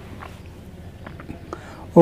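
A pause between spoken lines: only faint background noise, with a few soft clicks.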